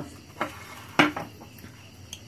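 Two sharp clinks of a metal spoon against a small glass bowl as the bowl is picked up and moved, the second clink louder, about half a second after the first.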